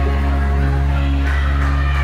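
A live country band with guitars and drums playing loud, with steady held notes over a strong, unbroken bass.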